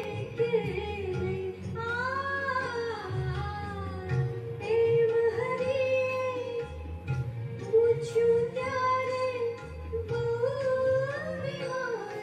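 Devotional singing: one voice sings a melody with sliding pitch over low, held accompanying notes that change in steps.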